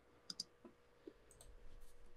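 Near silence with a few faint, brief clicks, one near the start and one about a second in, and a faint rustle near the end.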